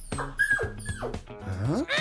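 A small dog whining over background music: a high held note, then falling away.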